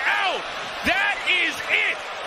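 Speech: a man's voice in short excited exclamations, two bursts over a steady background din.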